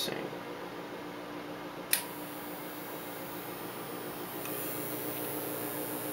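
Ameritron AL-80B linear amplifier transmitting a full carrier of about 1100 watts: a steady hum and fan noise. There is a short click at the start and a sharper click about two seconds in.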